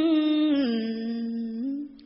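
A woman's solo voice chanting Khmer smot, Buddhist chanted poetry, on a long wavering held note that steps down in pitch about half a second in and fades out near the end.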